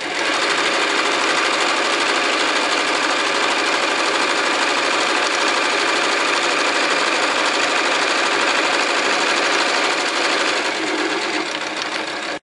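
Domestic electric sewing machine running at a steady speed, stitching a long seam around the edge of layered, pinned fabric. The needle's fast, even chatter eases slightly near the end.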